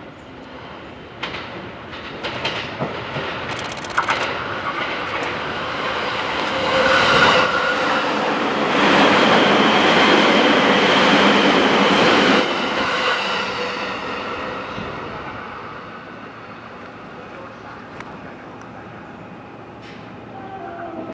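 JR 209 series 0 electric commuter train running through a station without stopping. A few sharp clicks of the wheels over rail joints are heard as it approaches. Then a rumble with several held tones grows to a peak around the middle, drops suddenly as the last car clears and fades away.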